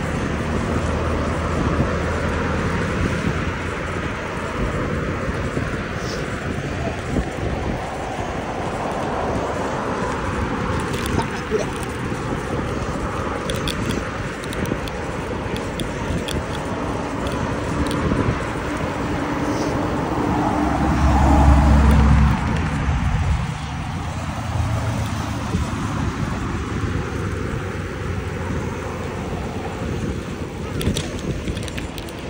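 Wind rushing over the microphone of a camera on a moving bicycle, with road traffic passing alongside. About twenty seconds in, a vehicle passes close by, the loudest sound, its pitch falling as it goes.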